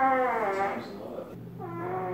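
A person's long, drawn-out vocal wail falling in pitch, amid laughter, then a second, shorter falling call over a steady low hum that starts about a second and a half in.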